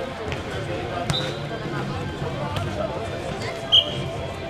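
Nohejbal ball being kicked and bouncing on the court during a rally, heard as a few sharp knocks with the loudest near the end, over the voices of players and onlookers.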